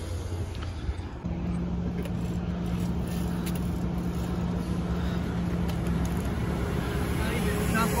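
Razor MX500 electric dirt bike fitted with an 1800 W Vevor motor on a 48 V lithium battery, approaching at speed. Its steady electric motor whine grows louder, and its pitch starts to sweep near the end as the bike comes close.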